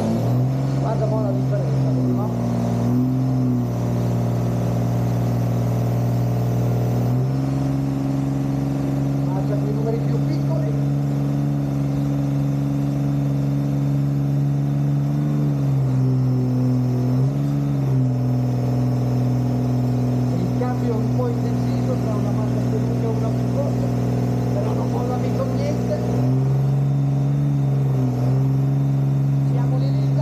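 Pickup truck engine held at full throttle while pulling a sled, running at a steady pitch that rises a step about a quarter of the way in and dips and recovers twice later on, as it shifts or loses and regains revs under load.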